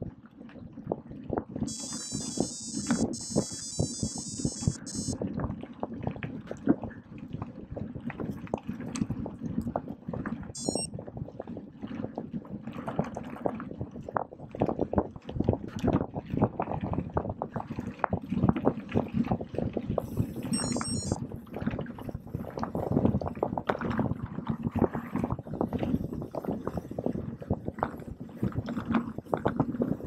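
Mountain bike ridden fast on a gravel forest road: continuous tyre noise on gravel with frequent rattles and clatter from the bike. Short high-pitched buzzing bursts break in three times, the longest a few seconds in.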